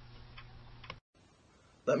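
Faint room tone with a low steady hum and a few faint ticks. It cuts off abruptly about halfway through to near silence, and a man's voice starts at the very end.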